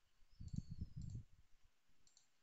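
Faint computer mouse clicks: a short run of soft, low clicks from about half a second to a second in.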